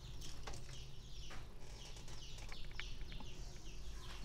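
Small birds chirping in quick, short, falling notes in the background, with a few sharp light clicks and a low steady hum underneath.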